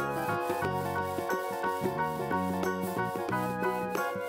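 Instrumental background music with a moving melody and bass line, over a scratchy rubbing of a felt-tip marker being stroked across a foam cutout to colour it.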